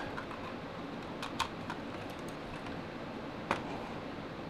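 A few small plastic clicks and taps over faint room hiss as a handheld trackball mouse is handled and its charging cable's plug is pushed in, the sharpest click about three and a half seconds in.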